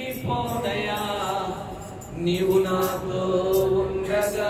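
A man singing a Telugu Christian worship song into a handheld microphone. He sings two slow, drawn-out phrases with long held notes; the second begins about two seconds in.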